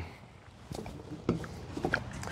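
Faint handling noise: light rustling and a few small clicks as a rolled blanket and cord are handled at the belt.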